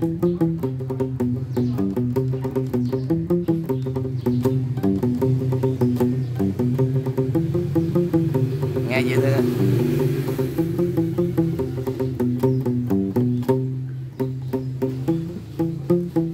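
Nylon-string classical guitar played with the strings palm-muted at the bridge: a fast, continuous run of short, damped plucked notes in a Central Highlands (Tây Nguyên) style.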